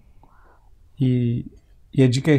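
Speech only: a man pauses, makes one short voiced sound about a second in, then resumes talking at the end.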